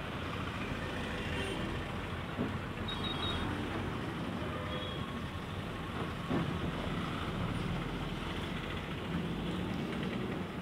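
Busy street traffic: auto-rickshaws and motorcycles passing, a steady mix of small engines and road noise, with a brief knock about six seconds in.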